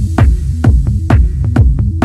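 Techno from a DJ mix: a four-on-the-floor kick drum, about two beats a second, over a throbbing low bassline. A high hissing layer above the beat drops away near the end.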